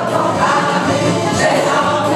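A women's folk singing group singing together, many voices holding sustained notes.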